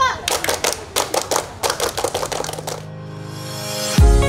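A group of children clapping their hands in a quick, uneven rhythm as part of a scout clapping routine. Near the end the clapping stops and music fades in.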